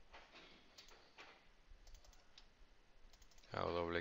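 A few faint, scattered clicks from computer input, a quick cluster of them about two seconds in. A man's voice starts speaking near the end.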